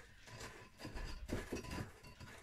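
Wooden spoon pressing and scraping soaked seaweed pulp against a metal sieve: faint, irregular scrapes and soft knocks.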